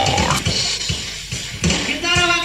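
Rock music: a steady drum beat, about four hits a second, with guitar, in a pause between sung lines.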